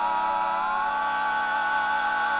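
Barbershop quartet of four male voices singing a cappella, holding one long sustained chord; one voice slides up slightly about halfway through.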